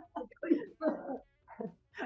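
A woman laughing softly in about four short, breathy bursts with gaps between them.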